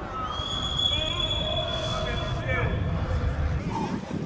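A long, steady, high-pitched training whistle blast lasting about two and a half seconds, with voices calling out around it.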